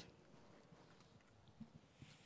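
Near silence: room tone, with one faint soft tap about one and a half seconds in.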